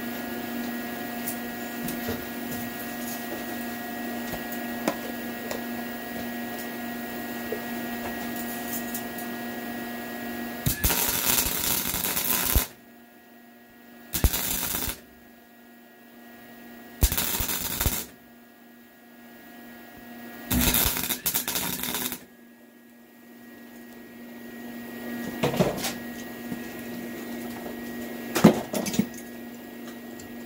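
Welding arc crackling in four short bursts of one to two seconds each, laying weld onto a broken steel exhaust manifold bolt stub in an LS cylinder head so that the heat frees it for extraction. Before the bursts there is a steady electrical hum, and a few sharp clicks come near the end.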